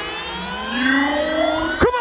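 Electronic rising sweep in a live DJ set: a many-toned pitch that climbs steadily, the build-up before a bass drop. A sharp hit lands near the end.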